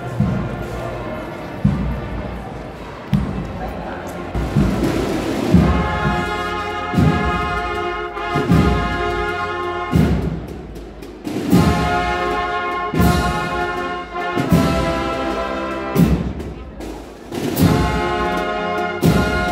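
Marching procession brass band playing a slow march: a bass drum beats about once every second and a half, and trumpets, trombones and tubas come in with sustained chords about six seconds in.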